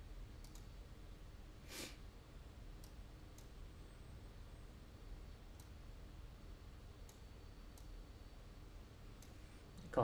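Faint, scattered computer mouse clicks, about seven spread irregularly, over low room tone, with a brief soft rush of noise about two seconds in.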